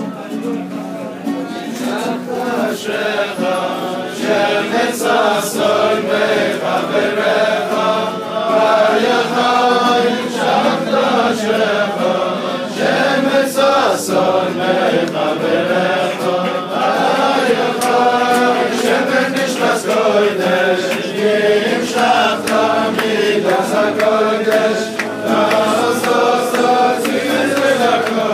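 A large crowd of men singing a Jewish religious song together, many voices in unison, growing louder over the first few seconds.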